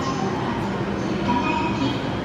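Steady running noise of a Hokuriku Shinkansen E7/W7-series train alongside the platform as it pulls in.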